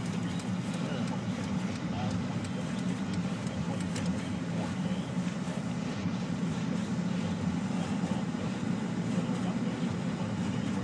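Steady engine and road drone heard from inside the cabin of a Jeep Liberty driving slowly on a snow-covered road.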